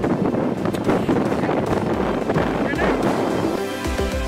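Wind buffeting a phone microphone outdoors, a loud rumbling roar with some indistinct voice in it. Background music with steady sustained notes comes in near the end.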